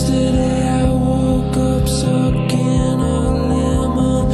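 Background music: slow, sustained chords over a low bass, changing about once a second.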